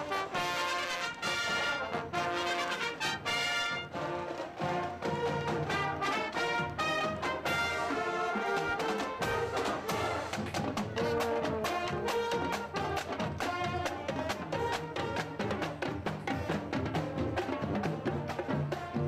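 Japanese high school marching band playing a brass tune on the march: trumpets, trombones and sousaphones over a steady drum beat.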